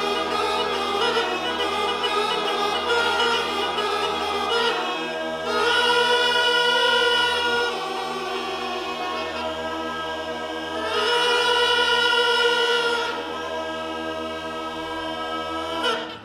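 Background music of a choir singing long, held chords over a low drone, swelling louder twice.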